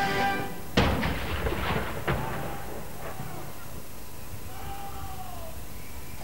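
A King's Troop 13-pounder field gun firing a blank saluting round about a second in, the bang echoing, with a second sharp bang about two seconds in. A band's held chord cuts off just before the first shot.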